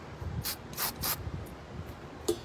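Aerosol spray paint can giving three short bursts of hiss, about a third of a second apart.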